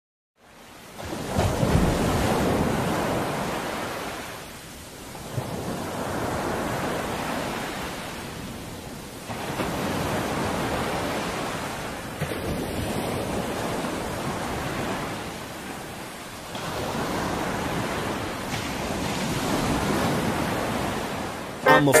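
Sea waves breaking and washing on the shore, the surf swelling and fading in slow surges about every four seconds.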